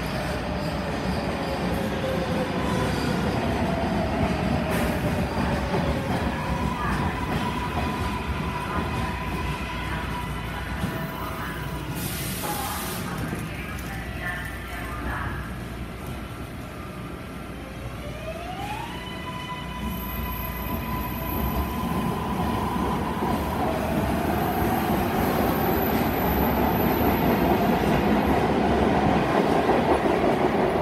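MARTA electric rapid-transit train in an underground station. It slows with a falling motor whine, then stands with a steady whine. About 18 s in the whine rises, and the rumble grows louder toward the end as the train pulls out.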